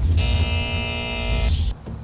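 Short musical sting for a TV show's logo transition: a heavy bass hit under a held chord, cutting off about a second and a half in.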